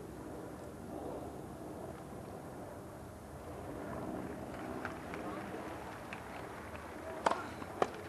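Low crowd murmur around a grass tennis court, then near the end two sharp racket-on-ball hits about half a second apart, the first the louder: a serve and its return.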